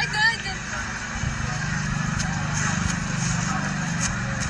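A voice is heard briefly at the start. A steady low hum then runs under faint background sounds.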